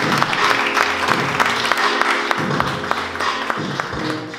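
Music playing with a small audience clapping over it; the applause thins out toward the end.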